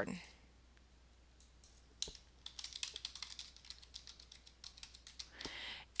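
Faint computer keyboard typing: a string of quick keystrokes beginning about two seconds in, as a password is typed into a login box.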